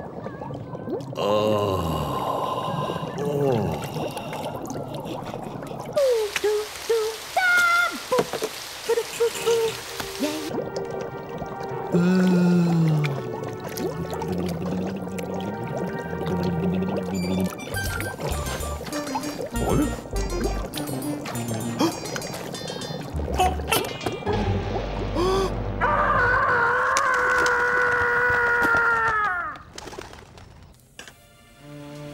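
Cartoon soundtrack of background music and comic sound effects, including water pouring. Near the end the sound drops away abruptly.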